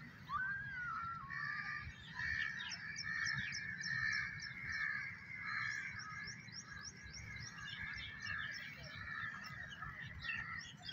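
Outdoor birdsong: several birds chirping and calling, with many short high chirps in quick runs over a steady warbling chorus.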